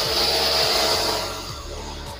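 High-pressure water jet from a jet-pump spray gun blasting dust off a dirty split-AC air filter mesh. The spray is loud for about the first second and a half, then eases to a lower, steady hiss.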